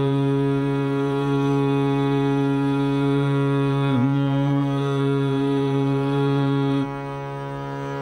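A male Hindustani classical vocalist holds one long, steady note over a drone in the opening alaap of raag Jog. The voice dips briefly in pitch about halfway through, then stops near the end, leaving the drone sounding on its own and more quietly.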